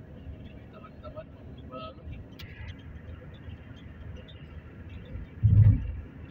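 Road noise inside a moving car: a steady low rumble and hiss. A little after five seconds in there is a brief, loud low thump.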